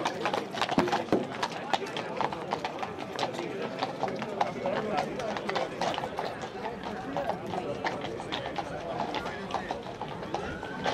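Horses' hooves clopping on cobblestones in irregular strikes, over a crowd talking.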